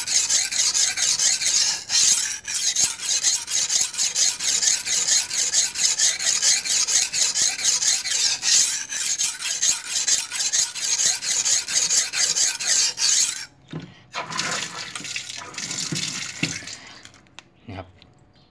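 A large leaf-spring-steel knife blade is worked rapidly back and forth on the coarse side of a wet sharpening stone, giving a fast, continuous wet scraping. The stone is biting into the steel well, shedding black swarf. The stroking stops suddenly about 13 seconds in, and softer handling sounds follow.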